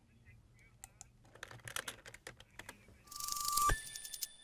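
Quiet, scattered computer keyboard keystrokes, then about three seconds in a short whoosh ending in a click and a bright ringing chime: a broadcaster's end-card jingle.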